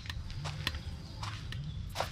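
Footsteps on a stepping-stone path: a few irregular light scuffs and clicks, with two short low hums.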